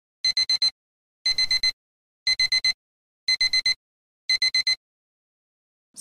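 Digital alarm clock beeping: five rounds of four quick, high-pitched beeps, about one round a second, with silence between rounds.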